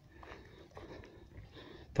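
Faint footsteps of a walker on a dry hillside trail, with light breathing.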